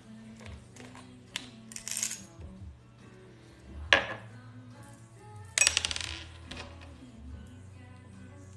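Small hard objects clinking and rattling against each other as they are sorted through by hand, with a sharp knock about four seconds in and a quick run of rattling clicks a little later. Quiet background music plays underneath.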